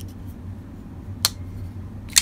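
One sharp click about a second in from the blade of a WE Knife Gavko Thresher titanium frame lock folder swinging on its ball-bearing pivot, over a steady low hum.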